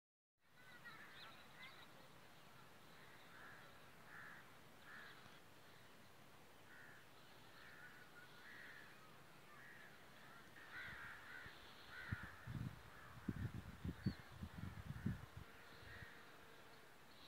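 Faint birds calling in short, repeated calls in open farmland. From about three-quarters of the way in, low bumps and rumbles on the microphone come in and are louder than the calls.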